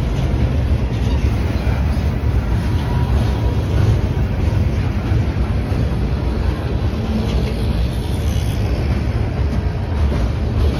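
Steel wheels of passing Herzog (HZGX) open-top freight cars rolling on the rail close by: a loud, steady rumble.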